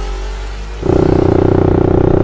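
The tail of an intro music sting fades out, and about a second in it cuts abruptly to the Suzuki Satria FU's 150 cc single-cylinder four-stroke engine, running at steady revs on the move.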